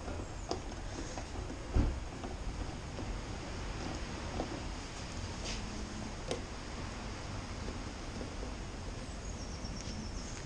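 Sparse light clicks and handling noises of a screwdriver and hands working at a car door handle, with one louder knock about two seconds in, over a steady low background hum.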